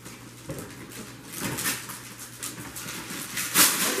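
Gift wrap and tissue paper rustling and crinkling as a present is unwrapped. There are bursts of crackling, the loudest just before the end.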